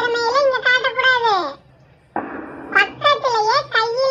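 A child's high-pitched voice speaking, with a short pause about halfway and a brief hiss as the voice resumes.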